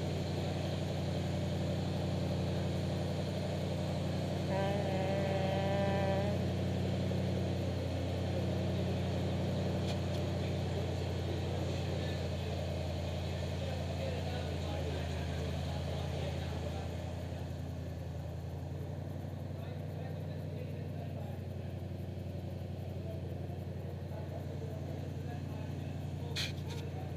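An engine idling steadily, a low even hum that runs throughout, easing a little in the second half. A voice calls out briefly about five seconds in.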